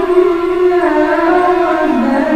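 A boy's voice chanting a long, unaccompanied melodic line into a microphone, holding drawn-out notes that waver in pitch and dip near the end.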